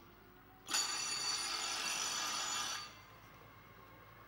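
Electric bell ringing loudly for about two seconds, starting and stopping abruptly. It is the stadium bell sounded while the mechanical hare runs round toward the loaded traps before the greyhounds are released.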